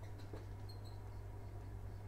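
Quiet room tone with a steady low hum, and a few faint high squeaks a little under a second in.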